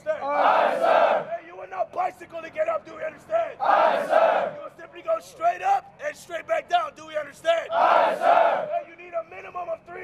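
A drill instructor shouting rapid instructions in short clipped phrases, answered three times, about every four seconds, by a large group of recruits yelling in unison.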